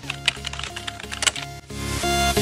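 Computer keyboard typing sound effect, a quick run of key clicks, over electronic background music that grows louder near the end.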